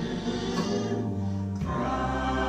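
Gospel choir music with held chords; the chord changes about one and a half seconds in.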